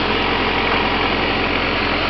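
1956 Farmall Cub tractor's four-cylinder flathead engine running steadily as the tractor is driven along.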